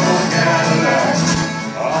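A small acoustic band playing a country song live: strummed acoustic guitars with a harmonica, between sung lines.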